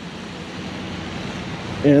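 Steady rushing noise of wind on the microphone outdoors, with a single spoken word near the end.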